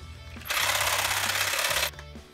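A loud, harsh mechanical rattling buzz, starting suddenly about half a second in and cutting off sharply after about a second and a half, over steady background music.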